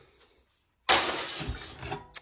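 A sudden clattering crash of scrap sheet metal, about a second in, dying away over the next second.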